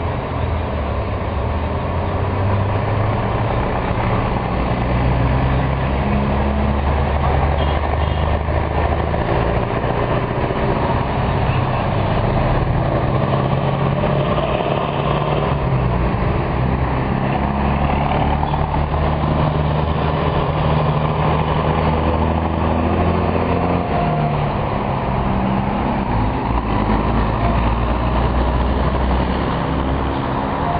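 Heavy trucks passing one after another at low speed, their diesel engines running with a steady low drone whose pitch shifts as each one goes by.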